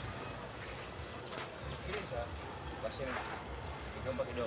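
Steady high-pitched chorus of crickets, with faint voices underneath.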